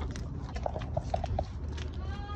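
A dog giving a quick run of about five short, high whines, among soft clicks.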